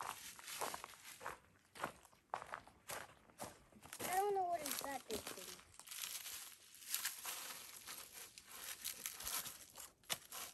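Dry leaves crunching and shoes and hands scraping on rock as a child scrambles down a rocky slope, in a run of short rustles and crunches. About four seconds in, a child's brief wordless vocal sound rises and falls in pitch.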